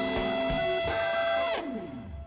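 Live jazz: a trumpet with a plunger mute holds long notes over organ and drums. About a second and a half in the held notes stop and slide downward as the music thins out.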